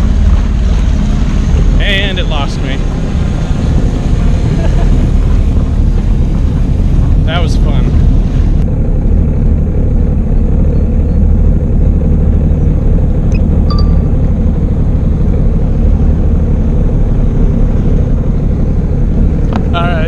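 Jet ski engine running steadily, with wind noise on the microphone; the hiss over the low drone thins out about nine seconds in.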